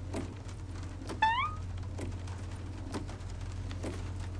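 Rain ambience inside a cartoon van: a steady low drone with faint scattered taps. About a second in comes a brief rising high-pitched squeak.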